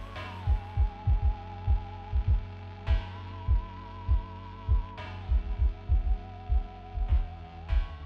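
Outro background music: deep bass drum pulses in a steady beat under a held, wavering tone that steps down and up in pitch every two to three seconds.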